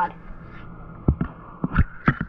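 Three short knocks in the second half as a GoPro camera is handled and lowered into a bucket of water, picked up through the camera's own microphone, over a low steady background.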